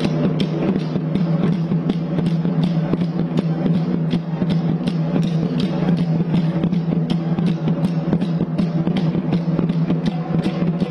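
Barrel drums beaten with sticks by a drum troupe in a fast, even rhythm, several strokes a second, over a steady held low tone.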